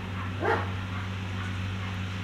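A dog gives one short bark, sweeping up in pitch, about half a second in, over a steady low hum.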